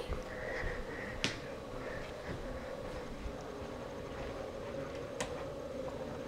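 Quiet indoor room tone with a steady low hum, broken by two sharp small clicks, one about a second in and one near the end.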